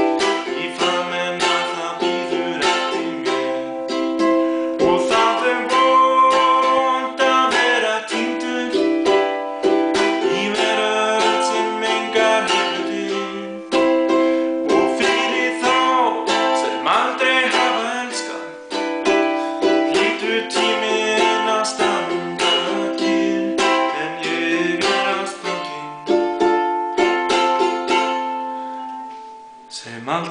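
Ukulele strummed in a steady rhythm, its chords ringing, with a man's voice singing along in Icelandic. The playing fades down near the end.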